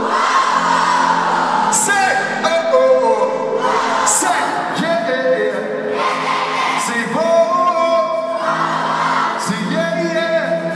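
Live band music with a male lead singer singing into a handheld microphone.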